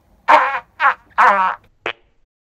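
Trumpet playing four short notes, each bending in pitch, the last one very brief.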